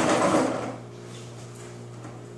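Plastic baby walker's wheels rattling across a tile floor as it is pushed, a short rough burst under a second long at the start.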